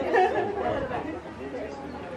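Chatter of several people's voices, loudest in the first second and then fading to a lower murmur.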